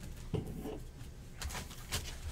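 Trading cards being handled on a table: quiet clicks and rustles of card stock, a soft low one about a third of a second in and a few crisper ones near the end.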